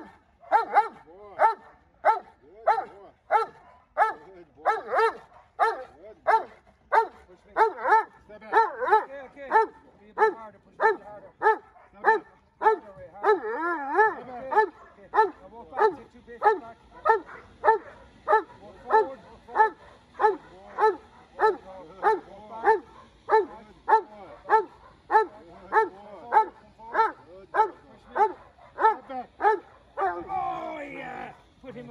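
Protection-trained dog barking steadily at a decoy, a guard bark of short barks at about two a second, kept up without a break.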